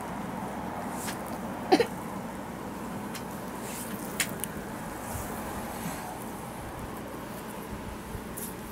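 Hands massaging a leg slick with heat gel: soft rubbing and slippery skin-on-skin strokes over a steady background hiss. A brief squeak about two seconds in is the loudest sound, with a few small sharp clicks later.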